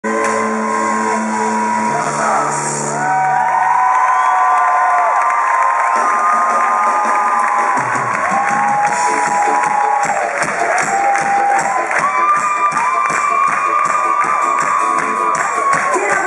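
Live pop concert heard from the audience: a woman singing with a live band, the crowd cheering throughout. Held low chords open it, and a steady beat comes in about eight seconds in.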